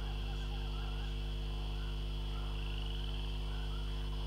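Steady low electrical hum with its overtones and a thin high whine, typical of mains hum in a stage sound system, with faint short chirping or calling sounds under it.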